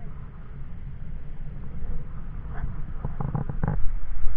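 Wind buffeting the microphone, a steady low rumble. About three seconds in there is a brief cluster of sharp clicks and rustles.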